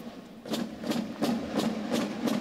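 Regular sharp beats, about three a second, over a steady low droning tone.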